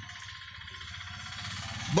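A pause in the speech: low, steady rumble of street background noise, like an engine idling nearby, with a faint click about a quarter second in.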